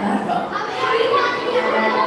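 Crowd of children talking and calling out at once, an overlapping babble of voices with no single speaker standing out.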